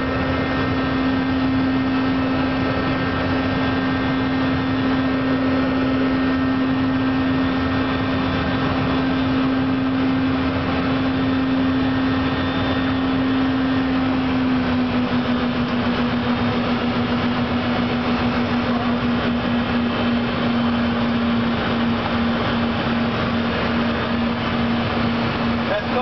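Cessna Citation cockpit in a climb: twin jet engine and airflow noise with a strong steady low hum. The hum steps slightly lower in pitch about halfway through, then wavers in a pulsing beat.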